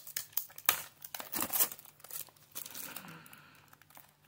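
Thin plastic wrapping crinkling as a small cardboard toy box is opened by hand, with the crackle coming in irregular bursts and a softer rustle later on.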